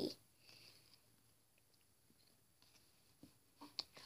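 Near silence, with a few faint, short, wet clicks near the end as fingers work soft, jiggly slime in a plastic tub.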